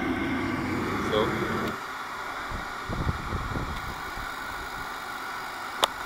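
Riello oil burner of a 43 kW diesel space heater running steadily. About two seconds in, its low, heavy running sound cuts away as the burner shuts down, leaving a quieter steady hum. A sharp click comes just before the end.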